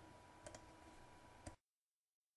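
Two faint computer mouse clicks about a second apart, over low hiss.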